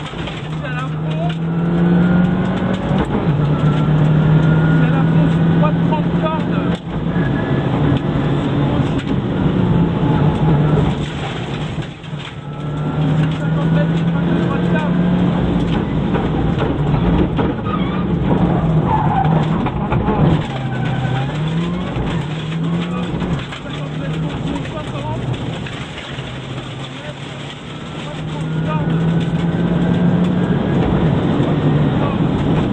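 Subaru Impreza N4 rally car's turbocharged flat-four engine heard from inside the cabin at racing speed, revs climbing and dropping again and again through gear changes, with short lifts off the throttle.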